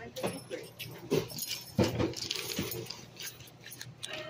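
A few brief murmured voice sounds, short syllables about one and two seconds in, with light clicks and clinks of things being handled.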